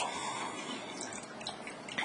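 Low, steady room noise with a few faint clicks.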